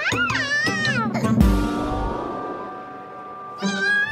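A cartoon toddler's wordless, whimpering voice that rises and falls in pitch, over background music. About a second and a half in there is a low thump, followed by a held chord that fades before the voice comes back near the end.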